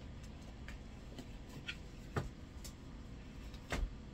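A stack of reading cards being handled and set down on a desk: soft taps with two louder knocks, one about two seconds in and one near the end, over a faint low rumble.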